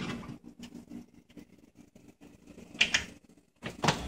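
Muffin pan being handled and slid onto a metal oven rack: a few faint clicks, a lull, then one short sharp metallic scrape about three seconds in.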